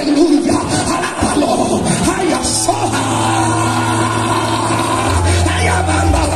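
A congregation praising aloud all at once, many voices overlapping, over background music. Steady low sustained notes come in a couple of seconds in and shift near the end.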